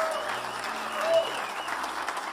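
A congregation applauding, with a voice calling out over the clapping about a second in.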